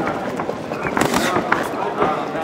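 Two sharp slaps of boxing gloves landing, about a second in and again half a second later, amid shouted voices around the ring.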